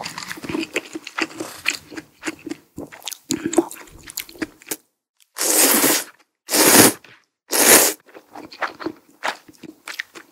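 Close-miked mouth sounds of eating tsukemen noodles: wet chewing, then three long, loud slurps of noodles from the dipping broth about five to eight seconds in, then chewing again.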